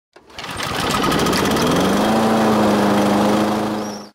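Lawn mower engine starting up: rapid firing that quickens and rises in pitch over about two seconds, then runs steadily at speed before cutting off suddenly near the end.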